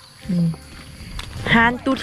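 Speech only: a woman's voice, with a short low vocal sound about a third of a second in, then a few spoken words near the end.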